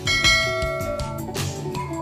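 A bell-like chime rings once as a countdown timer runs out, fading over about a second, over steady background music. A short rush of noise follows about one and a half seconds in.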